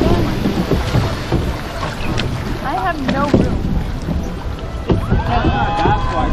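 Wind buffeting the microphone over the rush of water as a water-ride boat moves along its channel. Riders' voices come in briefly about three seconds in and again near the end.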